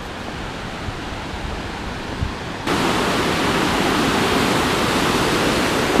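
Fast mountain torrent rushing over rocks: a steady rush of water, fainter at first and then suddenly much louder a little under halfway through.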